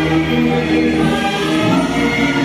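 Recorded backing music over PA speakers: sustained chords of held notes that change every half second or so.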